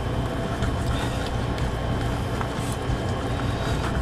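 Steady low hum of a running appliance motor, with a few faint clicks of a knife against a ceramic plate as meat is sliced.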